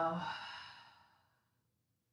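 A woman's long, breathy exhale, a sigh out through the mouth that fades away within about a second.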